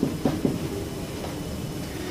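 Felt-tip marker writing on a whiteboard: a few short faint taps and strokes in the first half second, then only low room tone.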